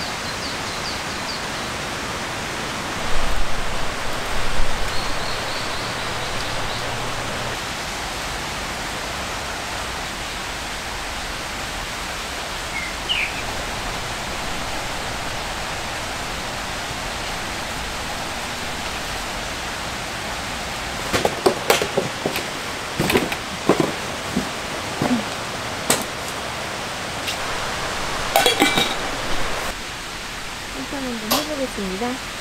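Steady rushing noise of rain and running stream water. In the last third comes a run of sharp knocks and clicks, from things being handled close by.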